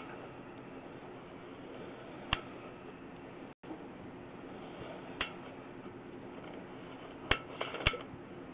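Sewer inspection camera and its push cable being reeled back through the line: a steady faint hiss with a few sharp clicks, one about two seconds in, another about five seconds in, and three in quick succession near the end.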